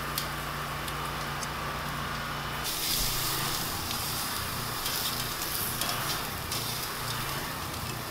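Raw shrimp sizzling on a hot gas grill grate: a steady hiss that turns brighter about three seconds in.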